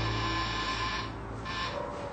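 Soft background music fading out: a high, steady shimmering chord holds, cuts off about a second in, and comes back briefly near the end.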